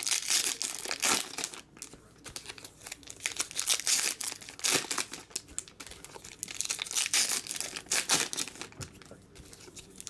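Foil trading-card pack wrappers crinkling and being torn open, in repeated bursts of rustling as the packs are handled.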